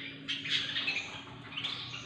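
Many caged canaries chirping and calling at once, a dense overlapping chatter of short high notes, over a faint steady hum.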